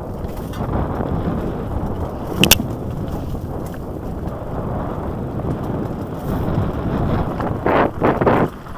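Mountain bike rolling over a rough dirt singletrack: a steady rumble and rattle of tyres and frame over the ground, with one sharp clack about two and a half seconds in and a louder rush of noise near the end.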